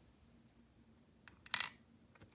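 Miniature plastic toy pieces being handled and set down on a plastic tray: a couple of faint clicks, then a short scrape about a second and a half in.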